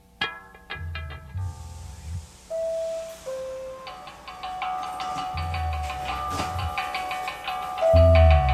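Instrumental passage of a rock song: a few plucked notes and low bass notes, joined about four seconds in by a repeating high, bell-like figure.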